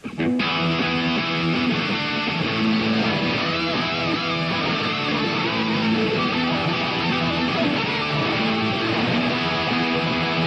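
Two electric guitars playing a rock part together, beginning a moment in.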